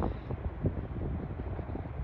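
Wind buffeting the microphone: an irregular low rumble with uneven gusts.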